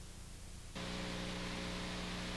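Steady tape hiss. About three quarters of a second in, a steady low electrical hum joins it as the footage cuts.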